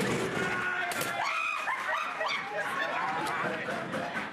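Several voices shrieking and crying out in panic, high and overlapping, with a sharp knock about a second in.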